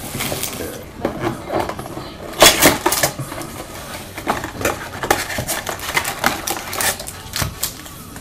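A cardboard trading-card box and its packs being handled on a desk: scattered taps, scrapes and rustles, with a louder crinkle about two and a half seconds in.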